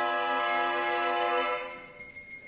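An opera orchestra holding one long, steady chord, which fades away about a second and a half in.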